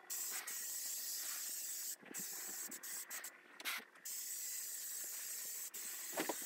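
Aerosol can of bed bug insecticide spraying in a steady hiss, broken by a few short spurts around the middle and ending just before the close.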